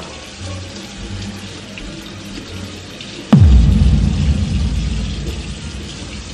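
Kitchen faucet running into the sink. About three seconds in, a sudden deep boom sound effect drops sharply in pitch into a low rumble that slowly fades.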